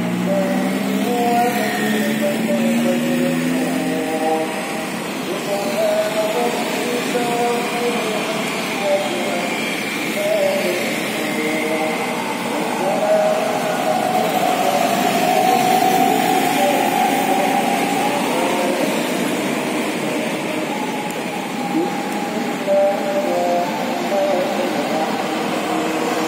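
Steady street traffic: motorcycles and cars passing close by, with people's voices mixed in.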